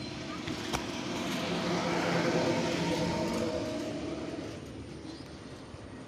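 A motor vehicle passing by, its engine and road noise swelling to a peak about two and a half seconds in and then fading away. A single sharp click sounds just under a second in.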